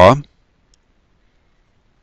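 A man's voice trails off, then near silence with one faint click about three-quarters of a second in.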